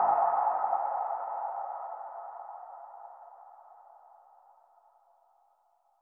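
A lingering mid-pitched synth tone, the tail of an electronic track after its beat stops, fading steadily away over about four seconds.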